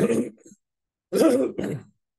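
A man's voice: the tail of a spoken phrase, then about a second in a short nonverbal vocal sound in two quick parts, a brief laugh or clearing of the throat.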